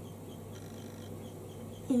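A steady low hum with a faint, evenly repeating high ticking, about four or five a second.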